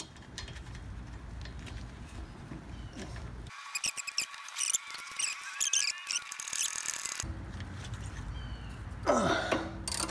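Socket ratchet clicking as it turns a bolt on a rear brake caliper, with hand and tool handling noise. In the middle comes a stretch of rapid sharp clicks and squeaks.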